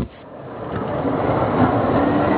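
A steady rumble of vehicle noise fades in over about the first second and then holds, with a faint hum running through it.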